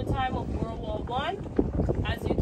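Wind rushing over the microphone with a steady low rumble from a moving boat, and a voice speaking briefly over it.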